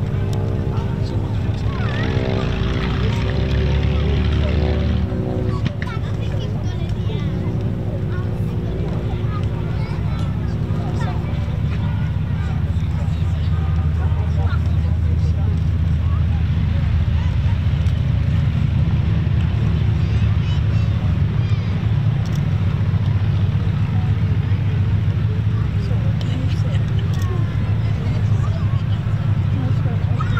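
Avro Lancaster's four Rolls-Royce Merlin V12 piston engines running as the bomber taxis on grass, a loud, steady, deep drone.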